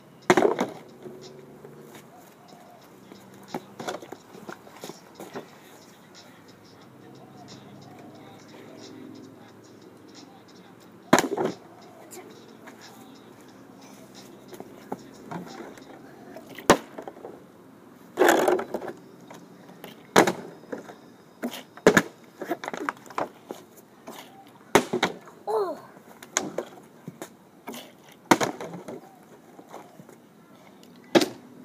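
Partly filled plastic water bottle being flipped and knocking as it lands on the ground and a concrete ledge. There is one loud knock right at the start, another about a third of the way in, and then frequent knocks and clatters through the second half.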